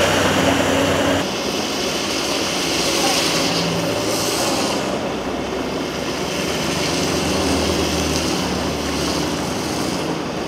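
Storm and traffic noise: a steady rush of wind and rain over the low hum of vehicle engines, changing abruptly about a second in.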